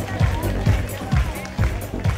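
Runway music with a steady kick-drum beat, about two beats a second, and a vocal line over it.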